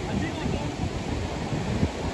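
Sea waves breaking and washing over a rocky shore, a steady noise, with wind buffeting the microphone.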